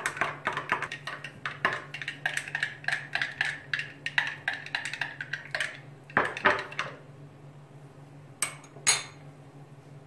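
A metal teaspoon clinking rapidly against a drinking glass as a salad dressing is stirred; the stirring stops after about six seconds, and two more clinks come near the end.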